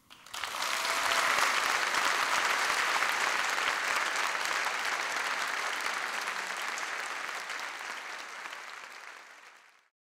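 Audience applauding, swelling up within the first second, holding, then slowly tapering off and fading out near the end.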